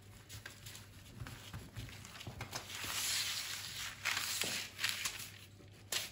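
Quiet handling sounds as a stretched pizza dough is lifted onto baking paper: a soft rustle of the paper swelling in the middle, then a few light taps.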